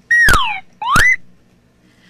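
Phone-ringing sound effect: a whistle-like electronic tone that sweeps down, then a second one that sweeps back up, each lasting about half a second.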